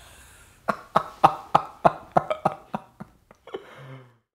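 A man laughing heartily: a run of about ten quick 'ha' pulses, about four a second, fading out and followed by a short hum. The sound then cuts off suddenly.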